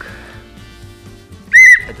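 A short, shrill whistle blast with a fast warble, about one and a half seconds in, over quiet background music.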